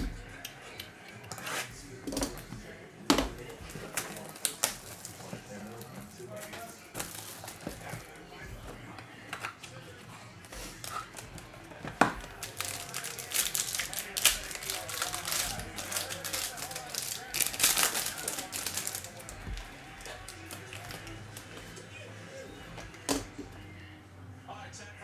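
Foil trading-card pack wrapper being torn open and crinkled, a dense crackling run through the middle stretch. Scattered sharp clicks and knocks from handling the cardboard box and card, the sharpest about three seconds in and at the start of the crackling.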